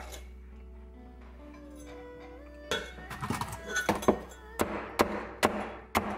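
A cleaver chopping through a crisp-battered, deep-fried chicken breast onto a plastic cutting board. Starting about three seconds in, there are about eight sharp chops, roughly two a second, with the crust crackling. Quiet background music with held notes plays underneath, and it is all that is heard in the first half.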